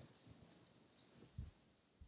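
Faint rubbing of a chalkboard eraser wiping chalk off the board, with one soft low bump about one and a half seconds in.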